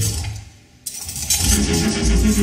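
Electroacoustic music for amplified cello and digital audio. A noisy electronic texture with a low rumble fades into a brief lull, then a new noisy sound cuts in suddenly just under a second in. Low pitched notes enter in the last half second.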